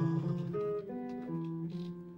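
A sung note held with vibrato fades out about half a second in, then an acoustic guitar plays a slow line of single plucked notes as an instrumental passage between sung lines.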